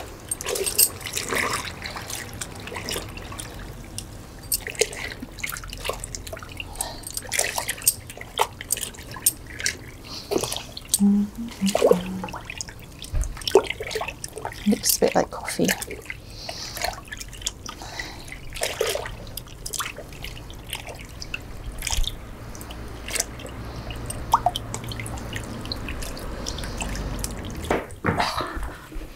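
Wet linen cloth being squeezed and stirred by hand in a stockpot of dye liquid: irregular sloshing and splashing with drips falling back into the pot.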